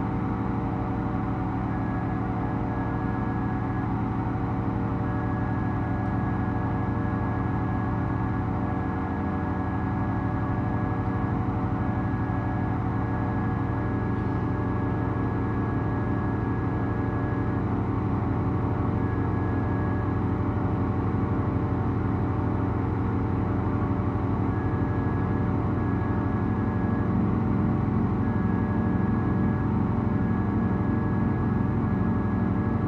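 Pipe organ playing a slow drone of many held notes, recorded acoustically with no processing. The stops are pulled out a little at a time, so the air's path through the pipes keeps changing. A few of the middle notes drop out about halfway through, and the low notes waver and grow slightly louder toward the end.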